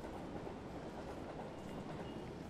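Steady train ambience: a train running on rails, an even low rumble with no sharp events.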